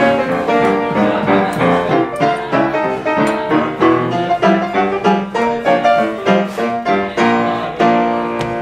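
Solo acoustic upright piano playing an early jazz tune at a steady, brisk rhythm, with distinct struck notes and chords.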